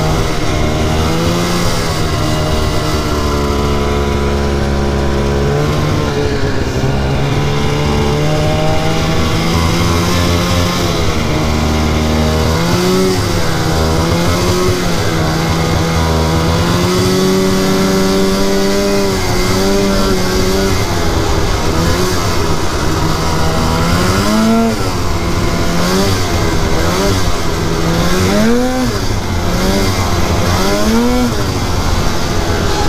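2004 Polaris RMK 800 snowmobile's two-stroke twin engine running under way, its revs rising and falling with the throttle, holding steadier through the middle and swooping up and down in several quick throttle blips near the end.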